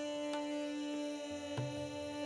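A steady tanpura drone under a few sparse tabla strokes, with a deep, resonant bayan stroke about one and a half seconds in, during a pause in the Hindustani classical singing.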